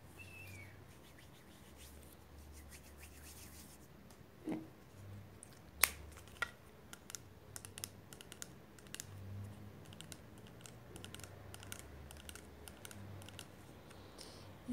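Close-miked hands working hair gel and handling a plastic keratin-gel bottle: scattered crisp clicks and taps, the loudest a sharp click about six seconds in.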